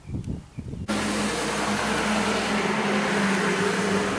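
A motor drones steadily with a constant hum. It starts abruptly about a second in, after a few soft low thumps.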